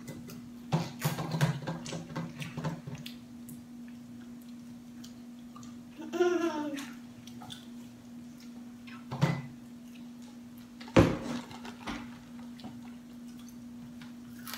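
Table eating sounds: fried chicken being bitten and chewed, with a run of small crackling clicks in the first few seconds and a sharp knock about eleven seconds in. A short voice sound comes about six seconds in, over a steady low hum.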